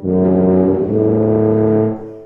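Solo tuba playing two long, loud notes, the second one taking over a little under a second in and fading near the end.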